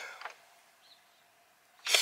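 Near silence with a faint steady hum, broken just before the end by a short burst of noise.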